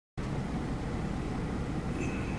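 Steady low rumble with an even hiss, heard inside the cab of an idling vehicle.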